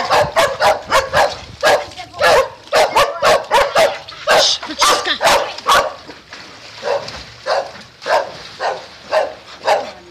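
A dog yapping over and over in short, sharp yaps, about three a second at first and a little slower in the second half.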